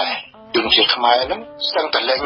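Speech: a voice talking in Khmer news commentary, with a short pause near the start.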